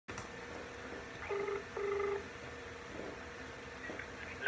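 Telephone ringing during an outgoing call: a double ring of two short pitched tones in quick succession, about a second and a half in.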